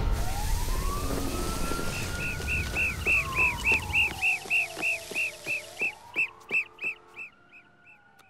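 Cartoon sound effects after an explosion: a low rumble dies away about halfway through, while a siren slowly wails up, down and up again and a car alarm chirps about three times a second, fading out near the end.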